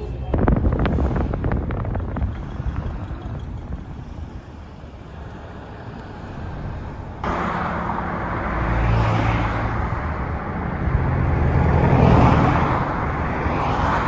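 A flurry of clicks and rustles close to the microphone, then quieter outdoor sound. About seven seconds in, this cuts abruptly to freeway traffic noise heard from a moving car: a steady road roar that swells as cars pass, loudest around the twelfth second.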